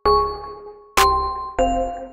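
West Coast hip-hop instrumental beat: bell-like synth chords that ring and fade over a deep bass, punctuated by sharp percussive hits about a second apart, with a chord change shortly before the end.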